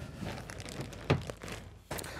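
A wooden storage drawer pushed shut on its soft-close slide, with a few light knocks about a second in and near the end, amid faint rustling.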